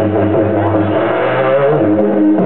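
Didgeridoo playing a continuous low drone with shifting overtones, and a rising overtone sweep about one and a half seconds in.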